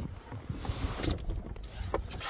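Wind rumbling on the microphone, with a faint hiss and a few light clicks, the first and sharpest right at the start.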